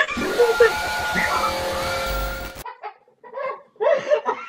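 A loud jumpscare sound effect, a harsh, noisy blast with long held tones, cuts off suddenly about two and a half seconds in. Startled shrieks from two young women follow it, the loudest near the end.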